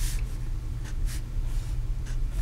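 Pen writing on paper: a few short, faint scratches as digits are written into a table, about one every half second, over a low steady hum.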